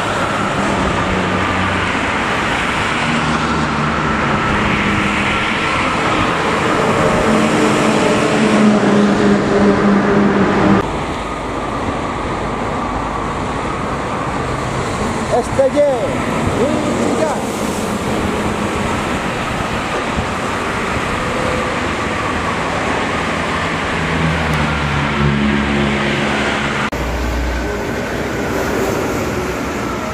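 Highway traffic: intercity coaches and cars passing at speed on a toll road, a steady rush of engines and tyres.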